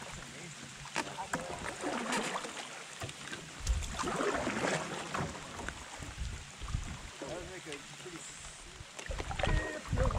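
Canoe paddling on a calm river in light rain: paddle strokes dipping through the water with light splashing and a few low thumps, over a steady hiss of rain on the water and faint voices of nearby paddlers.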